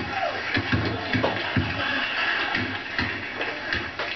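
A mallet pounding nuts on a kitchen counter: a run of about seven or eight irregular, sharp knocks.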